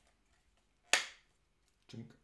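Plastic EU plug adapter snapping into place on a JYDMIX 65 W wall charger: one sharp click about a second in. A softer handling knock comes near the end.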